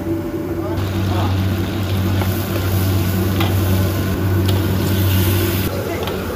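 Steady hum of a gas wok burner, with chopped goose pieces sizzling in oil in the wok from about a second in.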